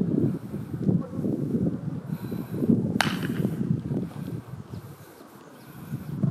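Gusty wind rumbling on the microphone, easing off after about four and a half seconds, with one sharp thump of a football being kicked about three seconds in.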